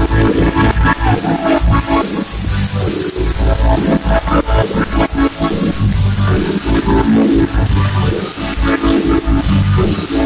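A live band playing loud amplified music on stage, heard from the audience, with a steady beat and heavy bass.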